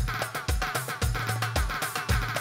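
Instrumental dance music from a live wedding band: a steady kick drum at about two beats a second under a buzzy, reedy lead melody with quick ornamental slides.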